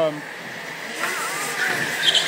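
Go-karts driving past on the track, their motor noise growing louder about a second in as a kart comes close.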